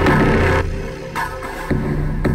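Synthesized film-score-style patch playing from Propellerhead Reason, a held low bass note with sharp hits on the beat. Its audio is switched in time with the beat between distortion, unison, reverb and vocoder effects.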